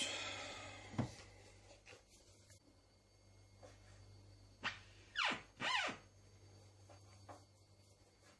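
The lid of a Tefal Pain Doré bread maker shutting with a single sharp click about a second in. A few brief swishing sounds follow around five seconds in, over faint room tone.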